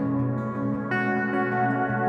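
Instrumental song intro: acoustic guitar notes ringing out with echo and reverb, with a new chord struck about a second in.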